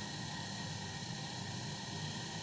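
Steady low hum and hiss of room noise, with no distinct sounds standing out.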